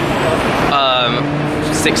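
Busy city-street traffic noise with a vehicle engine running close by. Partway through, a person gives a short, wavering exclaimed 'ooh'.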